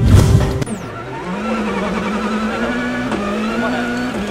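A loud whooshing hit of a news graphic transition, then a rally car's engine running at high revs, its note holding fairly steady and creeping up a little.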